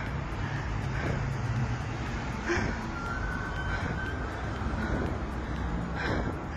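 City street traffic noise: a steady low rumble of cars on the road.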